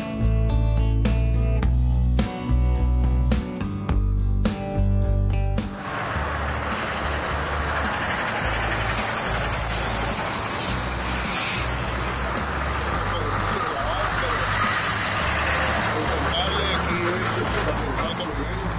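Music with a heavy bass beat that cuts off about five and a half seconds in, giving way to the steady noise of traffic on a busy road. A truck passes close, with a short high hiss about ten seconds in.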